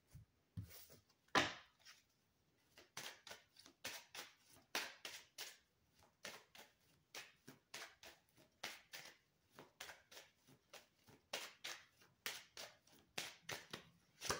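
A deck of Kipper fortune-telling cards being shuffled and handled by hand: a run of soft, irregular clicks and taps, several a second, with one louder tap about a second and a half in.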